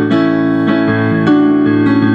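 Piano playing held chords in a short instrumental gap of a pop song, with a new chord struck about every half second.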